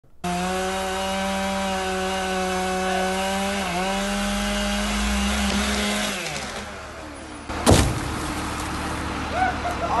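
A chainsaw runs at steady high revs cutting through the base of a large tree trunk, then winds down about six seconds in. A little under eight seconds in, a single heavy thud as the felled trunk hits the ground.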